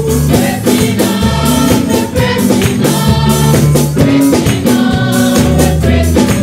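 Gospel choir singing with live band accompaniment, bass and drums keeping a steady beat.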